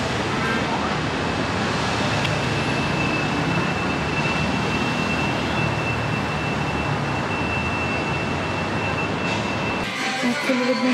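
City street traffic noise, a steady wash of passing vehicles, with a thin steady high whine through most of it.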